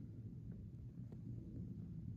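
Faint steady low rumble of room tone, with a few light clicks.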